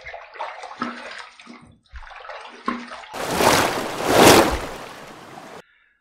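Tap water running into a bathroom sink and splashed onto the face to rinse off shaving lather after a pass. The splashing is uneven at first, then a louder rush of water runs through the second half and stops abruptly shortly before the end.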